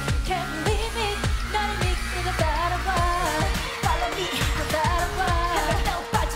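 K-pop girl-group song performed on stage: female vocals over a beat driven by a heavy, repeated kick drum, with a sustained synth-like tone held through the second half.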